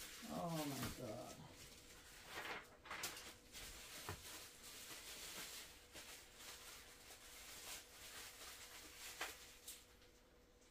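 A short wavering vocal sound in the first second, then faint rustling and light knocks of packaging and parts being handled.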